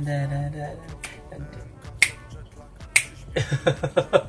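Two sharp finger snaps about a second apart, with a rap track playing in the background; a burst of laughter follows near the end.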